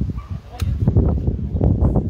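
Low rumble of wind buffeting the microphone, with a sharp click about half a second in.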